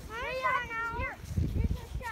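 A young child's high-pitched, wordless wail, one call about a second long that rises and then falls.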